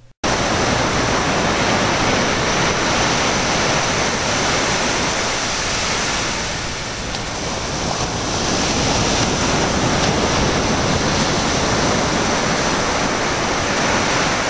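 Ocean surf breaking and washing up a sandy beach: a loud, steady rush of waves that eases slightly about halfway through.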